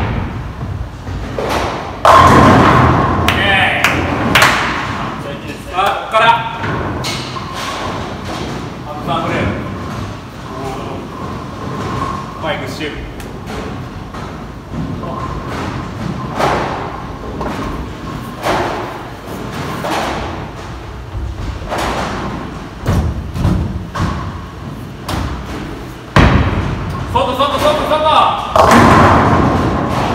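Bowling ball rolling down the lane and crashing into the pins about two seconds in, with a second pin crash near the end.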